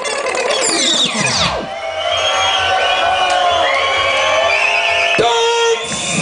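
A reggae record on a sound system turntable winding down as it is stopped by hand, the whole mix sliding down in pitch over about a second and a half. It is followed by a crowd cheering and whooping.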